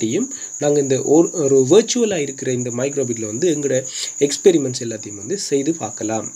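A man speaking in Tamil, over a constant high-pitched whine that runs unbroken beneath the voice.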